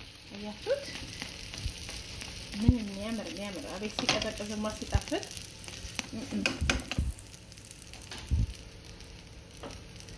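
Flatbread dough sizzling in a hot nonstick frying pan, a steady hiss of frying. Several sharp taps from a plastic slotted spatula against the bread and pan.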